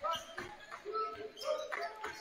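A basketball being dribbled on a hardwood gym floor, a series of short bounces, with faint voices from the court.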